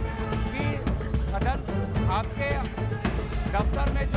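Dramatic news-headline music with a deep drum beat, with a man's voice speaking underneath it.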